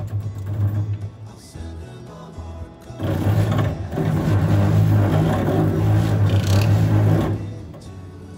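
Gear train of a Huaming SHM-D tap-changer motor drive unit being turned by hand crank: a steady mechanical whir lasting about four seconds, starting about three seconds in, over background music.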